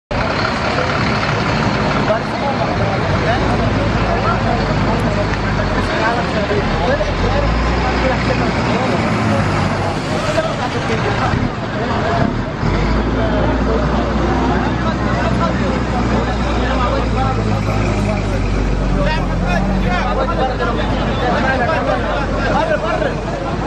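Coach bus engine running close by, a steady low hum that fades for a few seconds midway and comes back, under a crowd of people talking and calling out.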